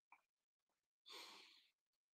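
Near silence, with one faint breath out from a man about a second in, lasting under a second.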